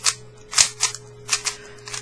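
MoYu AoLong GT 3x3 speedcube's plastic layers being turned quickly by hand, clacking sharply about six times at an uneven pace.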